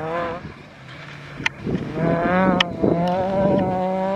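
Rally car engine at high revs on a gravel stage. The sound dips soon after the start and comes back strong about two seconds in as a car drives hard, with a few sharp cracks.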